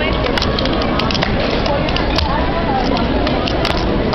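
Steady loud rushing noise with scattered sharp clicks through it; the clicks fit a fingerboard's deck and wheels tapping and rolling on a cardboard sheet.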